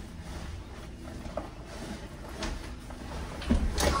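Rummaging in a closet: faint rustling and light knocks as a heavy bag is pulled out, with a louder knock shortly before the end.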